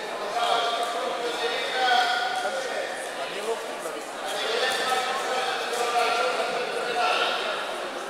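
Raised voices from spectators and coaches calling out during a judo bout, no clear words, going on throughout.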